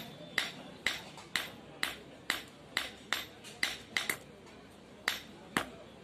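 Blacksmith's hand hammer striking a vegetable-knife blade held with tongs on a small anvil: sharp ringing clinks about twice a second, with a short pause about four seconds in.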